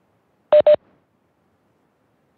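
Two short electronic beeps in quick succession at the same pitch, about half a second in: a Cisco Webex Meetings notification tone.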